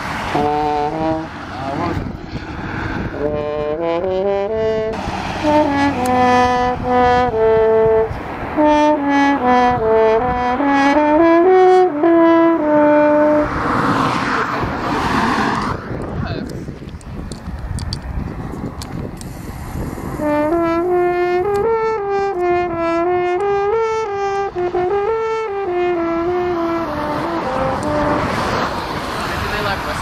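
French horn played live, in two melodic phrases of held and stepping notes, the second with a wavering pitch. A rush of noise fills the pause between the phrases, about halfway through.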